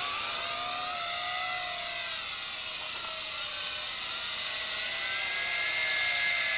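Tarantula X6 quadcopter's small electric motors and propellers whining in flight, several steady tones that drift slightly up and down in pitch as the throttle changes.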